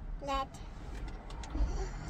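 Low, steady rumble of a car heard from inside its cabin, with one short voiced syllable about a quarter second in.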